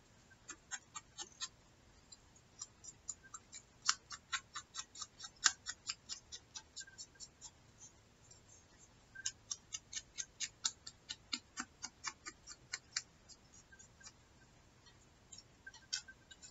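A small ink pad dabbed and tapped along the edges of a torn paper piece, making quick, irregular light ticks and clicks, several a second, with short pauses about halfway through and again near the end.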